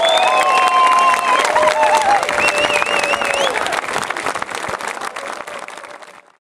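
Audience applauding, with a few cheers over the clapping in the first three seconds or so; the applause fades out toward the end.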